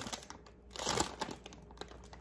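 Plastic snack-chip bag crinkling as it is handled, in two short bouts, with a brief lull between them.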